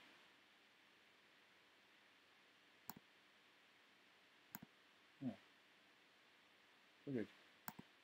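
Computer mouse clicking, three quick double clicks spread over a few seconds against near-silent room tone.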